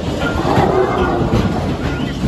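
Matterhorn Bobsleds roller-coaster car running along its track, a loud continuous rumble and rattle of the wheels on the rails.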